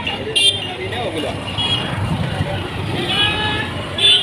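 Busy street ambience: vehicle engines running close by under a steady low rumble, with people's voices around. A short sharp knock about half a second in.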